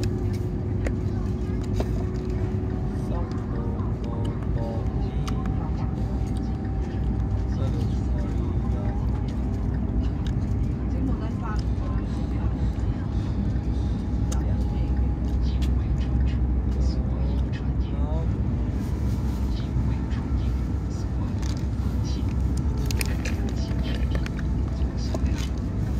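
Cabin noise of a CRH380A high-speed train under way: a steady low rumble from the running gear and track, with faint voices and music over it.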